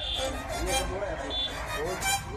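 Background song: a singer's voice sliding up and down in smooth phrases over the music track.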